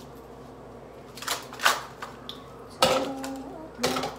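Ice cubes being worked out of a plastic ice cube tray and dropped in, giving about four separate clinks and knocks.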